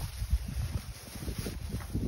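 Wind buffeting the phone's microphone: an uneven low rumble with irregular gusty pulses.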